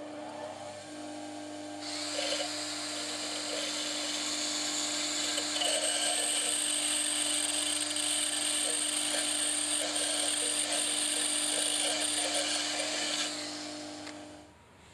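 Bench grinder running with a steady hum while a cordless drill spins a tungsten TIG electrode against its grinding wheel. A high grinding hiss starts about two seconds in and stops about a second before the end, as the electrode is sharpened to a point.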